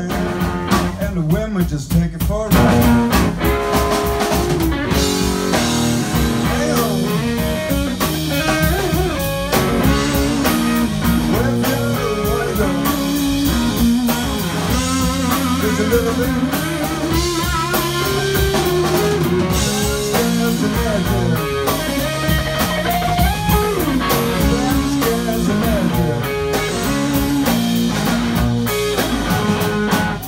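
Live blues-rock band playing an instrumental passage: electric guitar lead lines with bent notes over bass guitar and a drum kit.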